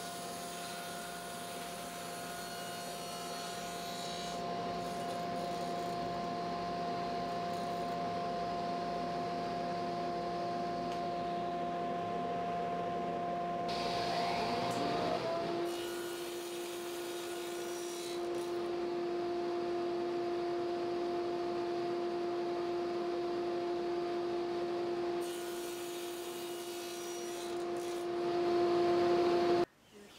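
Table saw running steadily while small wood pieces are crosscut, the blade's tone holding level with the cuts. Its pitch shifts about halfway through and the sound cuts off abruptly just before the end.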